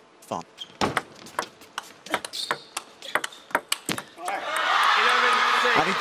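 Table tennis rally: a rapid, irregular string of sharp clicks as the plastic ball strikes rackets and table, about four seconds long. Then the arena crowd breaks into cheering and shouting as the match point is won.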